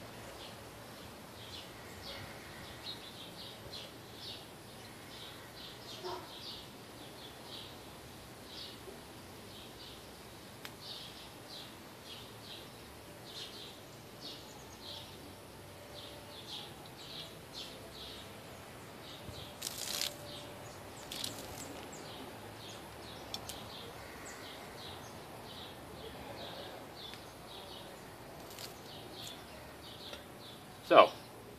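Faint outdoor ambience: small birds chirping in short, high, repeated notes over a steady background hiss, with a couple of sharp clicks about two-thirds of the way through.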